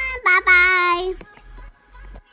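A young girl singing long, held high notes, stopping a little over a second in, over background music with a steady beat.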